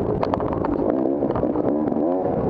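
250cc enduro dirt bike engine revving up and down as the throttle is worked over a rough woods trail, with a few sharp knocks from the bike's chassis and suspension in the first half.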